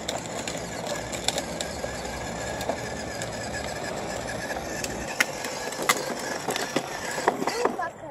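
Hard plastic wheels of a child's battery-powered ride-on toy motorcycle rolling over rough, gritty concrete: a steady rolling rumble with scattered clicks and crunches from grit under the wheels.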